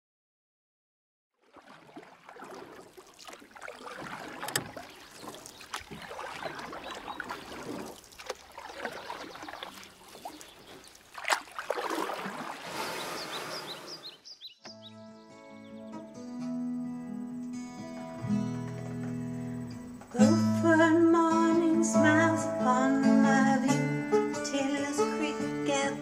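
A wash of unpitched, water-like noise fades in after a moment of silence. About halfway through it gives way to a fingerpicked acoustic guitar introduction, which grows louder and fuller about three-quarters of the way in.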